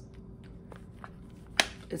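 A leatherette manicure case with a snap closure being shut: one sharp snap about one and a half seconds in, after faint handling rustle.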